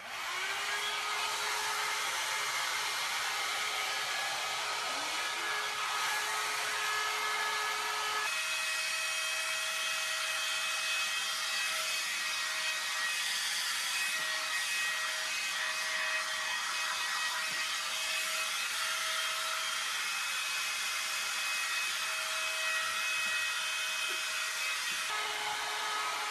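John Frieda Salon Style 1.5-inch hot air brush running: a steady rush of blown air with a motor whine, switched on at the start. About eight seconds in the whine steps up in pitch, and it drops back down shortly before the end.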